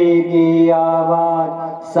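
Chanted Punjabi litany for the dead, asking the Lord to give the departed peace and eternal life, sung in long held notes over a steady drone.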